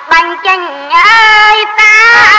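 A woman singing Khmer ayai repartee: a high, ornamented vocal line with wavering, sliding pitch, broken into short phrases.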